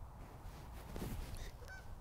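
Faint outdoor ambience with a low steady rumble, and a brief bird call about a second in.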